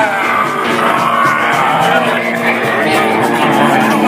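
Live rock band playing loudly, with electric guitars and bass over drums and cymbals.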